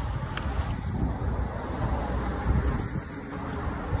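Steady low rumble of background noise, with a few faint clicks.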